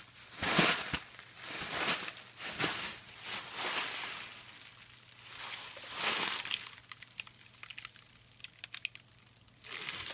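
Thin HDPE plastic shopping bags crinkling as hands crumple and press them flat onto a baking tray. The crinkling comes in an irregular series of bursts, loudest about half a second in and again around six seconds, then softer with a few small crackles near the end.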